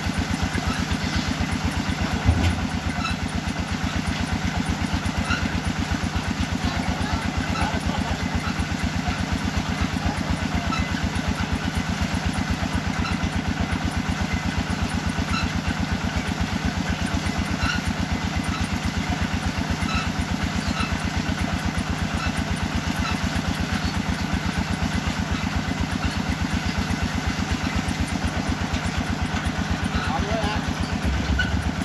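Engine of a small truck-mounted water-well drilling rig running steadily while drilling, with an even, rapid pulse. A short knock sounds about two seconds in.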